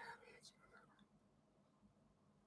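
Near silence: room tone with a faint low hum, and a soft whisper-like sound in the first half second.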